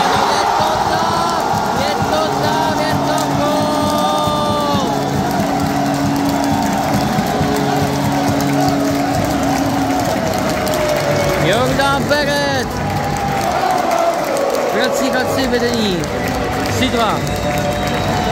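Ice hockey arena crowd cheering and shouting just after a home-team goal, with music playing over the arena loudspeakers.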